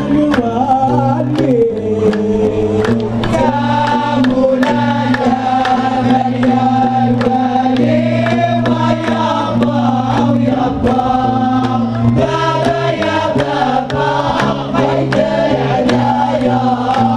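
Hamadsha Sufi chorus chanting in unison, voices holding long notes, over a steady beat of hand claps.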